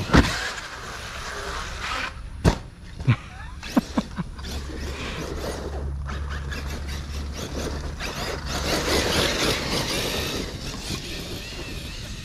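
Large 8S brushless electric RC basher truck driving hard across grass, its motor and drivetrain whining steadily as the tyres tear through the turf, with a few sharp knocks in the first four seconds.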